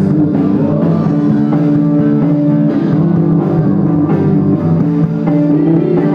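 Live rock band playing an instrumental passage, with guitar over drums, loud and continuous.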